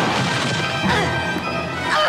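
Cartoon fight sound effect of a crash as a body is knocked down among flying debris, over loud dramatic background music.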